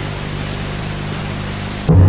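A steady hiss with a low steady hum beneath it, part of a screen's soundtrack. Near the end, louder music cuts in.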